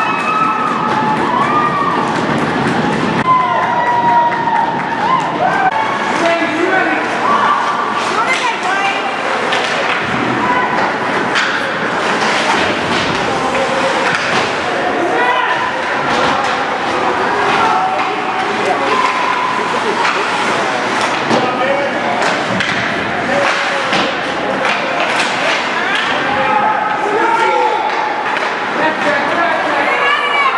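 Spectators at an ice hockey game talking and shouting without pause, with scattered thuds and slams from play on the ice, such as pucks and sticks hitting the boards.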